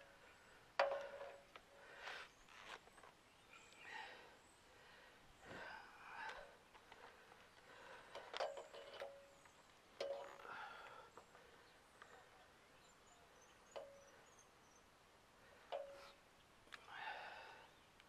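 Faint handling sounds of wires and a plastic junction box: a few short clicks spaced a few seconds apart, with soft rustles between them.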